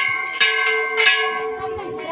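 Metal temple bell struck by hand, twice in quick succession, each strike ringing on and fading slowly.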